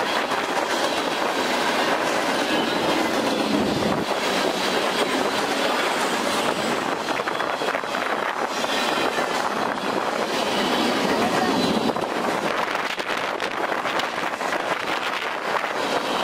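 Norfolk Southern freight train cars rolling past: a steady rumble and clatter of steel wheels on rail.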